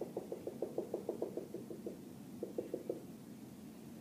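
Dry-erase marker tapping on a whiteboard, dabbing out a dashed line in a quick run of about eight taps a second, then a pause and four more taps.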